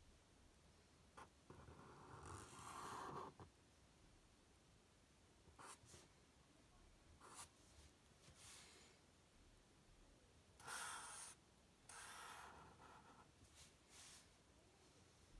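Faint strokes of a black felt-tip marker on paper as lines are inked: several short, soft scratching strokes at irregular intervals with quiet gaps between.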